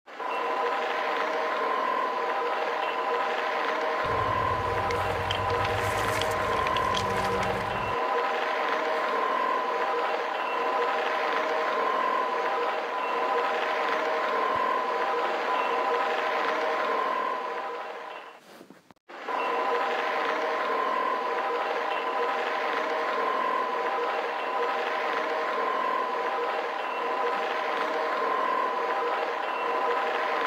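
Dubbed-in diesel locomotive engine sound effect running steadily, a held set of even tones that dips out briefly about two-thirds of the way through and then carries on. A lower rumble joins it for about four seconds, starting about four seconds in.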